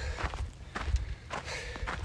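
Footsteps on a dirt hiking trail: a few scattered steps over a low rumble.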